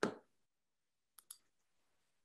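Faint computer mouse clicks: a short knock right at the start, then a quick pair of sharp clicks about a second later.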